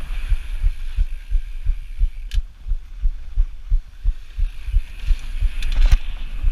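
Mountain bike descending a trail at speed, heard through a chest-mounted action camera: an irregular low thumping rumble from wind buffeting and the bike jolting over bumps. A sharp click comes about two seconds in, and a few more near the end.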